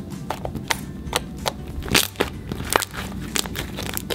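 Soft pink fluffy slime being kneaded and squished by hand, giving irregular sticky pops and clicks, several a second, with a louder one about two seconds in.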